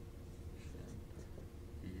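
Dry-erase marker writing on a whiteboard: a few short, faint squeaky strokes over a steady low room hum.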